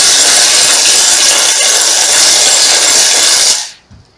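Small shells rattling loudly and continuously as they are shaken in a wooden bowl, stopping abruptly near the end.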